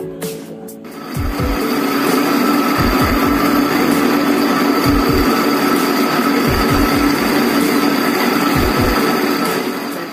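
Electric kitchen blender running at a steady speed, blending rainwater and rice into a milky liquid. It starts about a second in and stops just before the end, a steady motor noise with a whine in it.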